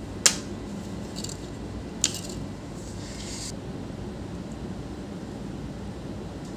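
Hands handling laptop motherboard parts and cables: two sharp clicks, one just after the start and one about two seconds in, with light rustling, over a steady background hum.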